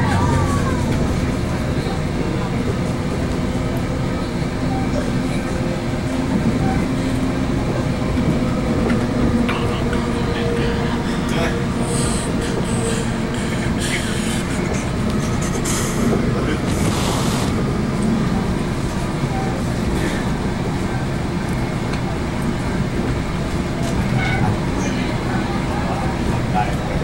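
Inside a Metrolink commuter train at speed: the steady running rumble of the coach and its wheels on the rails, with a few brief hissy rattles around the middle.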